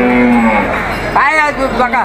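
A cow mooing: one steady, held call that ends about half a second in.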